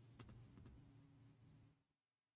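Four or five faint computer keyboard keystrokes in quick succession in the first second.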